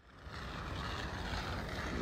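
Steady road traffic noise with a low rumble, fading in over the first half second and then holding.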